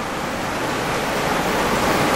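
Steady, even hiss of background noise in the room or the audio feed, slowly getting a little louder.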